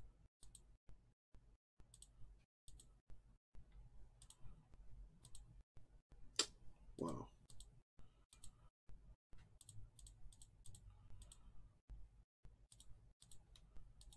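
Faint key presses on a computer keyboard, in short clusters of a few clicks with brief pauses between. One louder, brief sound comes about halfway through.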